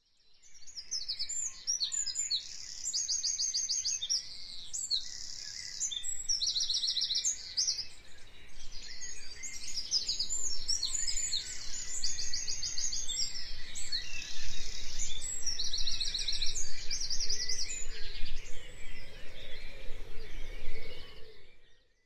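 Birds singing: many high chirps and fast trills of rapidly repeated notes, over a faint steady background hiss.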